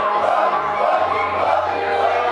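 A crowd of many voices shouting and chanting together over music, with a steady low bass entering about a second in.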